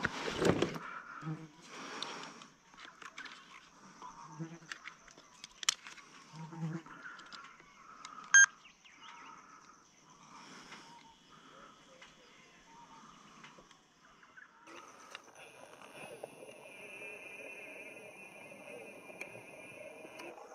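Soft handling clicks and rustles, then a short electronic beep about eight seconds in as a handheld video camera is switched on. From about fifteen seconds in, a steady high insect drone.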